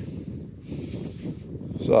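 Low outdoor background rumble with a few faint brief rustles, then a man's voice starts near the end.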